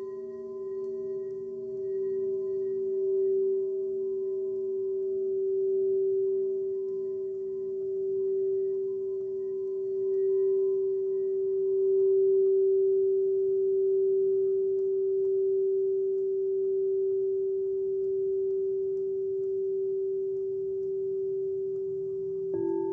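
A singing bowl sounding one long, steady tone that swells and ebbs slowly in loudness, with fainter higher overtones that die away over the first half.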